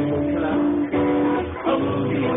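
Live Hawaiian-style music for a hula, led by strummed guitar with sustained notes. It sounds thin and lacks treble, as recorded on a mobile phone.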